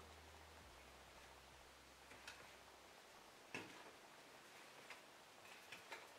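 Near silence, with a few faint, short crackles and ticks from a hand kneading a crumbly baking-soda and shaving-cream mixture in a glass bowl.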